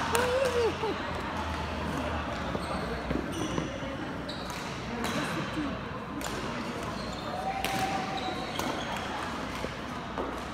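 Badminton hall sounds: scattered sharp racket hits on shuttlecocks and brief high squeaks of court shoes on the floor, with voices in the background.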